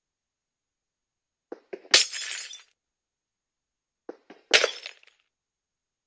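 Breaking-glass sound, twice, about two and a half seconds apart: each time a few light clicks lead into a sharp crash with a short tinkling tail.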